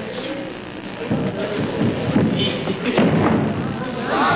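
Two wrestlers grappling in a takedown demonstration: bodies thudding and scuffling on the floor from about a second in, with voices in the background.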